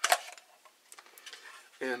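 Large rubber band pulled off a plastic rifle magazine and blower fan: a short sharp snap just after the start as it comes free, then faint handling of the plastic.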